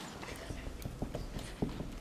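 Scattered soft knocks and taps on a wooden stage floor at an irregular pace, several a second, with faint murmuring.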